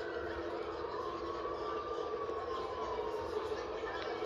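A distant siren wailing, slowly rising and then falling, over a steady city-street hum, heard through a TV speaker.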